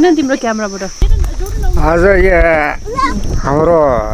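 People's voices talking in short stretches, the pitch wavering up and down, most strongly around the middle and near the end.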